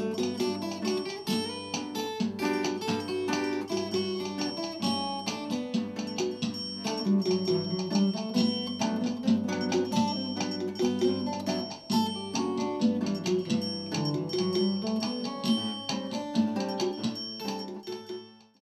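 Acoustic and electric guitar playing a piece together, a steady stream of plucked notes and chords that fades out at the end.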